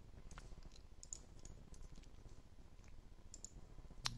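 Faint computer mouse clicks, a few scattered sharp ticks over quiet room tone.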